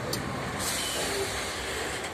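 Loaded grain hopper wagons of a freight train rolling past on the track: a steady rolling noise of steel wheels on rail, with a brief hiss about half a second in.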